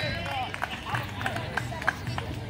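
Distant voices of onlookers talking outdoors, with a few faint, scattered clicks.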